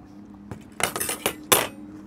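A paper napkin rustling in a few quick bursts about a second in, as it is picked up and handled to wipe the hands.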